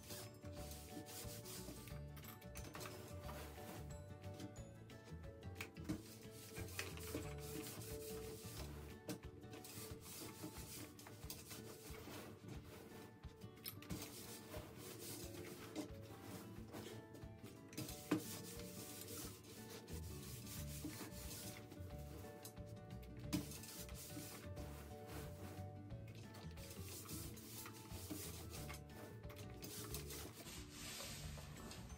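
Faint rubbing of a clothes iron sliding back and forth over thin organza and tulle, with the fabric rustling as the gown's layers are moved and smoothed by hand. A few sharp clicks stand out, the clearest about eighteen seconds in and another a few seconds later.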